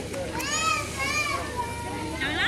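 Children playing in a swimming pool, their high-pitched voices calling out and overlapping.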